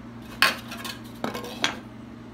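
Wooden guitar-kit parts (neck block and end block) knocking on the workbench as they are handled. There are three sharp knocks, the first about half a second in and the loudest, the other two lighter and close together.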